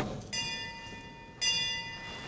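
A bell rung twice, about a second apart, each ring a cluster of high, steady ringing tones.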